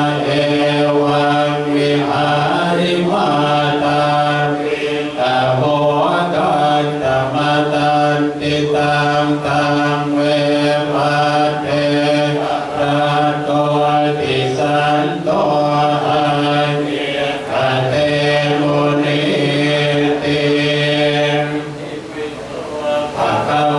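Group of Buddhist monks chanting in unison on one steady low pitch, near-monotone, with short breaks between phrases every second or two.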